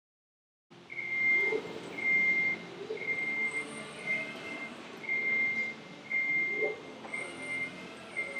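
A high, steady beep repeating about once a second, each beep lasting roughly half a second, over faint music.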